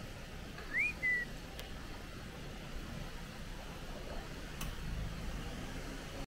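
A short two-note whistle about a second in, the first note rising and the second held level, over a steady low background rumble.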